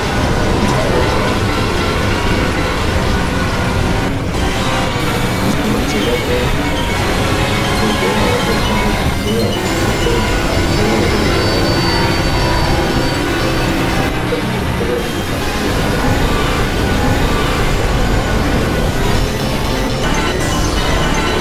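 Dense experimental electronic noise music from synthesizers (Novation Supernova II and Korg microKORG XL): layered drones and tones with no beat. It fills the whole range and stays loud and unbroken.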